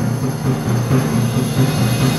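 Concert band playing loud, with a fast, driving figure of repeated low notes.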